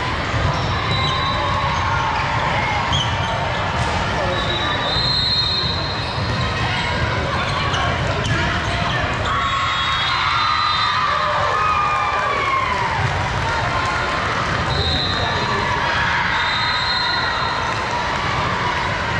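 Indoor volleyball hall during play: sneakers squeaking on the sport court, the ball being hit and bouncing, and players and spectators calling out over a steady din of the hall.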